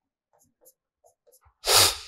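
A few faint taps of a marker on the board, then near the end a single short, loud burst of breath from the man at the microphone, sneeze-like, lasting under half a second.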